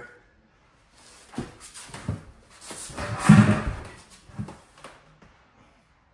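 A string of knocks, bumps and rustling as a person moves about and crouches into an open kitchen sink cabinet, with the loudest thump a little past the middle.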